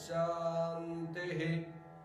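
Background devotional music: a voice holding one long chanted note at a steady pitch, fading out near the end.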